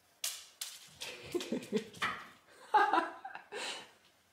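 A woman chuckling softly, with a few light clicks of a tossed cat kibble bouncing along the hard hallway floor, the sharpest just after the start.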